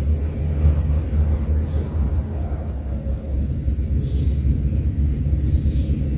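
A steady low rumble, with a few faint scratchy strokes of a marker writing on a whiteboard about two and four seconds in.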